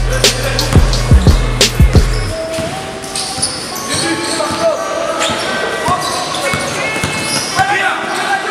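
Background music with a heavy bass beat cuts off about two and a half seconds in. It gives way to live basketball game sound in a hall: a ball bouncing on the court and players' voices.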